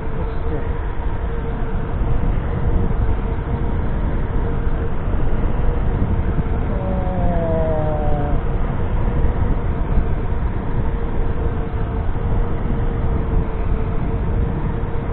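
Electric scooter riding at a steady speed: wind and road rumble on the microphone, with a steady whine from the electric motor. About seven seconds in, a short pair of falling gliding tones sounds over it.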